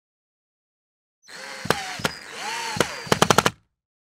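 Produced intro sound effect: a noisy swell with a few sharp hits, ending in a quick string of about five hits like a machine-gun burst that cuts off suddenly.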